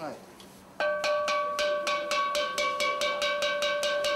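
Steel pan (a 'Doremi Pan' steel drum hammered out of steel like a wok) rolled on a single note with rapid mallet strokes, about five a second, starting about a second in and ringing one sustained pitched tone.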